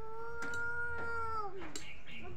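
One long, high-pitched vocal call that swells in, holds a single steady pitch for about a second and a half, then falls away near the end. Two faint taps sound under it.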